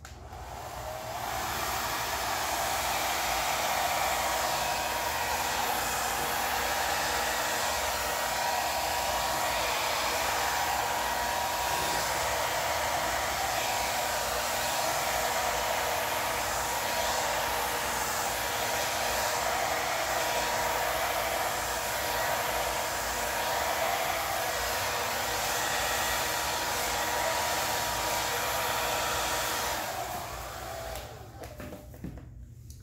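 Handheld hair dryer running steadily with a faint whine in its rush of air, blowing wet acrylic paint outward across a canvas. It comes up to speed in the first second and cuts off at the very end.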